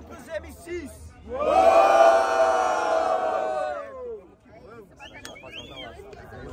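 Crowd of rap battle spectators giving one long collective shout that starts just over a second in, lasts about two and a half seconds and falls away as it ends, followed by scattered voices.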